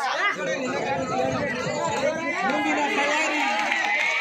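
Crowd of spectators chattering, many voices overlapping at a steady level.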